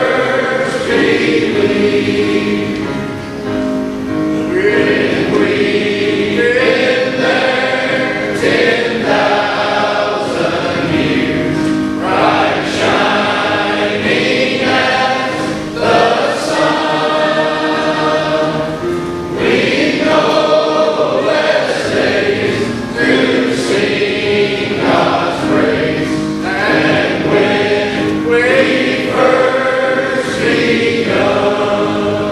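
A large choir singing in harmony, several voice parts holding chords together, with short breaks between phrases.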